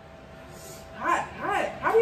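A dog giving a quick run of short, high barks, starting about a second in.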